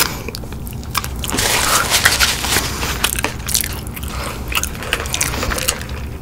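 Close-miked eating of crunchy fried chicken wing: chewing with sharp wet mouth clicks, and a louder, denser stretch lasting about a second, starting about a second and a half in.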